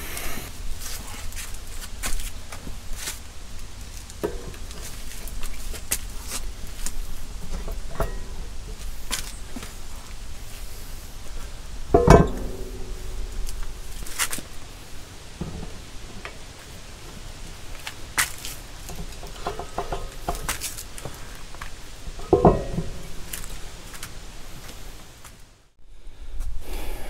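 Cast-iron tractor wheel weights clinking and knocking against the rear wheel and its long mounting bolts as they are handled and slid into place. Two heavy metal clanks stand out, one about halfway through that rings on briefly and another near the end.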